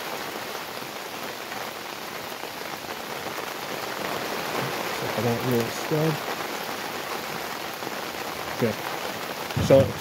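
Steady rain falling, an even hiss throughout.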